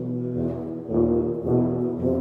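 Tuba and euphonium ensemble playing sustained low chords, the harmony moving to a new chord about every half second.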